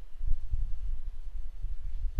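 A low, uneven rumble with nothing else on top: the recording's own background noise.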